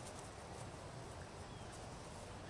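Faint outdoor background noise with an uneven low rumble and a couple of faint clicks near the start.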